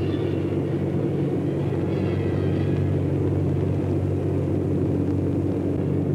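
Steady in-flight drone of a Consolidated B-36 bomber's six piston engines and pusher propellers, a low hum made of several steady tones.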